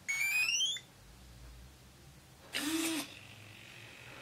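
A radio-control transmitter switching on, with a quick run of rising start-up beeps. About two and a half seconds in comes a half-second servo whirr, rising and falling in pitch, as the gear door servos swing the doors open.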